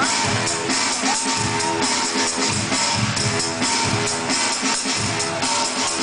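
Breakbeat DJ set playing loud over a festival sound system, with a steady drum beat and bass under held synth tones, heard through a phone's microphone.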